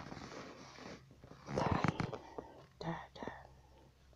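A person whispering or breathing softly close to the microphone, in short breathy bursts about a second and a half in and again about three seconds in.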